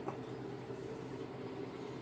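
Steady low hum with a faint hiss of background room noise, with no distinct event.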